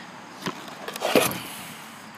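A thin sheet of birch plywood being picked up and handled among wooden boards: a couple of light clicks, then a louder knock and scrape about a second in, over a faint steady hiss.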